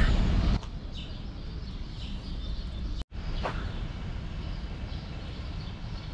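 Outdoor city ambience: a steady low rumble with faint bird chirps. The sound cuts out for an instant about three seconds in.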